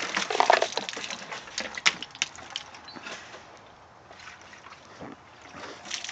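Water sloshing and splashing in a plastic poultry water dish being handled and tipped out, with a few sharp knocks and clicks about two seconds in.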